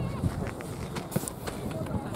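Open-field soccer game: players' voices and calls over a steady low rumble, with a couple of sharp thuds of a soccer ball being kicked, about a quarter second and a second in.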